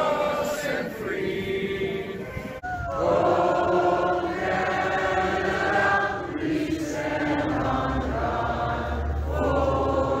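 A large crowd singing together in unison, holding long notes, with a short break about two and a half seconds in before the singing carries on.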